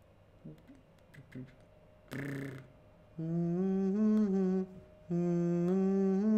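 A man humming a vocal warm-up exercise: two held phrases, each stepping up a note and back down again, starting about three and five seconds in. A short breathy sound comes just before them.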